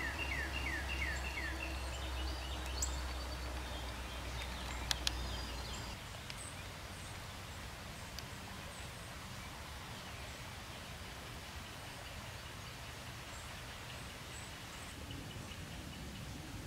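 Quiet woodland ambience: a songbird gives a quick run of about six falling whistled notes in the first second and a half, with faint high chips from birds later. A low steady rumble runs under the first six seconds and then stops, and two sharp clicks come about five seconds in.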